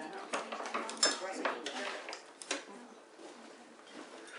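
A utensil scraping and clinking against a stainless steel mixing bowl as thin chocolate cake batter is poured out of it into a baking pan. There are several sharp clinks in the first two and a half seconds, and the sound grows quieter toward the end.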